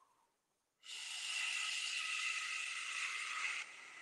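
A man's long, slow breath out through pursed lips, a steady hiss that starts about a second in, lasts nearly three seconds and stops abruptly. It is a deep breath in a guided breathing exercise.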